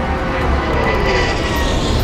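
Aircraft flyby sound effect: a swelling rush of engine noise whose pitch falls as the craft passes, over orchestral film score.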